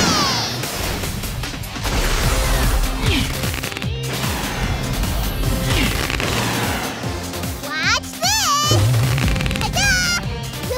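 Animated-cartoon action soundtrack: music under whooshing and crashing sound effects, with several sudden hits. Near the end comes a high, wavering voice-like cry.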